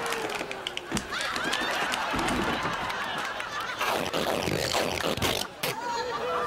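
Studio audience laughing, many voices at once, with a few sharp knocks mixed in.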